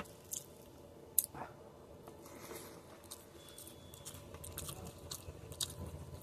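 Close-up chewing of a mouthful of beef and rice, with sharp wet clicks and smacks of the mouth, the loudest about a second in and more of them in the second half.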